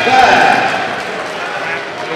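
A basketball dribbled up a hardwood gym floor on a fast break, with sneaker footsteps and voices in the gym. A voice calls out near the start.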